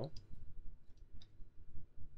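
A few scattered clicks of a computer mouse.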